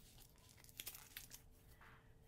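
Faint crinkling and rustling of a linen fabric piece and a bundle of embroidery floss being handled and opened out.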